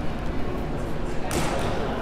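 A single sharp thud about a second and a half in: a hollow plastic Blitzball striking after being pitched, with a short echo from the large hall.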